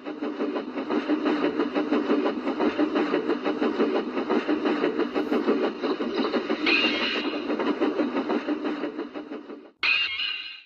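A train running with a fast, rhythmic clatter that stops abruptly near the end, followed by a short, higher-pitched burst.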